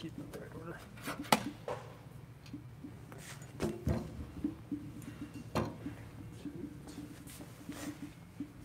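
Handling clicks and knocks of MōVI Wheels controller parts as they are unclamped and set down: a sharp click about a second in, then a few duller knocks, with faint voices in the background.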